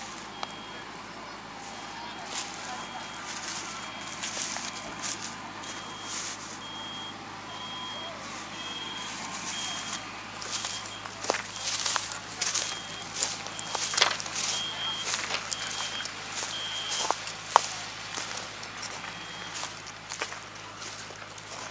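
A high electronic warning beeper repeating about once a second, typical of a machine's reversing alarm. Voices sound in the background, with scattered sharp knocks and rustles in the second half.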